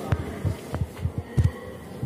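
Irregular low thumps, about seven in two seconds, the loudest pair about one and a half seconds in, over a faint steady hum.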